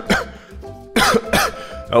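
A person coughing hard, several short harsh coughs about a second apart, the coughing of someone who has just pulled on a bundle of four vapes at once. Soft background music runs underneath.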